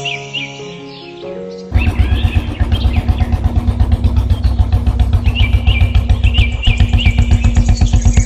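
Light background music with chirping birdsong. About two seconds in, a loud motorcycle engine sound starts and runs at a fast, even putter, drowning out the music.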